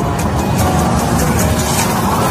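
Loud intro music layered with a dense, noisy rushing sound effect with a heavy low rumble.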